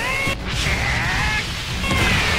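Anime fight-scene soundtrack as a head and a fist clash: a loud, steady rush of noise with sliding tones over it, mixed with music.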